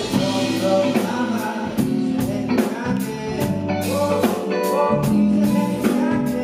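Live band performing a song: a male vocalist sings into a handheld microphone over a drum kit keeping a steady beat and other band instruments.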